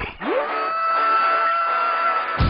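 A man's long yell that sweeps up in pitch, then is held on one high note to the end, over background music.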